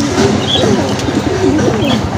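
Domestic fancy pigeons cooing in a cage, with coos repeating and overlapping throughout.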